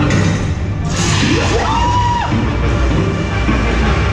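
Dark-ride soundtrack: orchestral music with a loud noisy burst about a second in, followed by swooping electronic sound effects that rise and fall in pitch.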